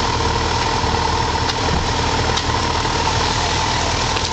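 A large scooter's engine idling steadily.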